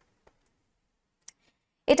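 A pause in which a single sharp computer-mouse click sounds, about a second in, as the slide is advanced; a woman's voice starts again at the very end.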